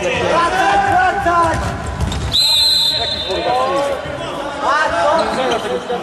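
Players and spectators shouting in an echoing sports hall during an indoor football game, with the ball thudding on the court and against feet.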